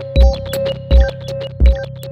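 Elektron Digitone FM synthesizer playing a sequenced electronic pattern of stock sounds: deep thumps about every 0.7 s, the loudest part, under a steady held mid tone and quick short high blips.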